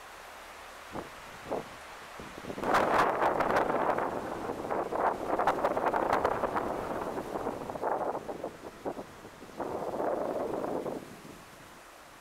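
A gust of wind rustling the leaves of a tree close by, swelling about two and a half seconds in, staying gusty and crackly, then dying away near the end.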